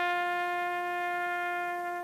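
Bugle call played on a bugle: one long held note that gradually softens.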